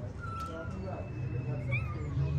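Kitten mewing: a thin, high mew lasting about half a second, then a short rising mew near the end.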